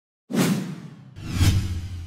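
Logo-animation sound effects: a whoosh about a third of a second in, then a second, heavier whoosh swelling about a second later with a deep rumble under it, fading away.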